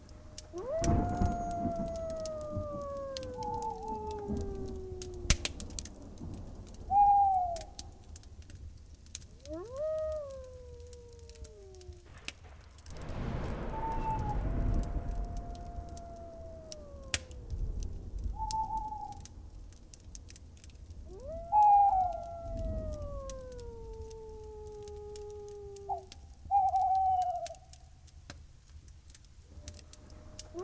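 Night-ambience animal howls: long calls, most of them several seconds long, each rising quickly and then gliding slowly down in pitch, four in all. Short higher hoot-like notes come between them. A swell of wind-like noise comes about halfway through.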